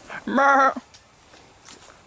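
A man imitating a sheep's bleat: one loud, short 'baa' lasting about half a second, a moment after the start.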